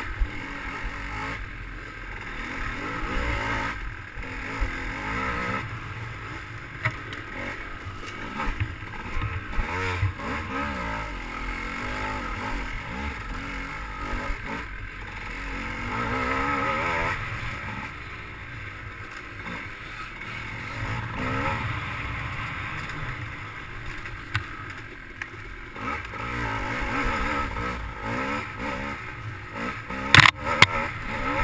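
Dirt bike engine revving up and down continually as the throttle is worked on a rough trail, with scattered knocks and rattles from the bike over the bumps.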